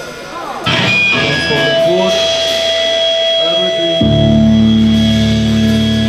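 Amplified electric guitar sounding a loud held chord that rings on steadily, starting suddenly about half a second in over crowd chatter; a low sustained bass note joins about four seconds in, with no drumming yet.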